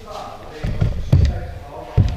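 A cluster of dull, low thumps about a second in and another sharp thump at the end, with a person's voice around them.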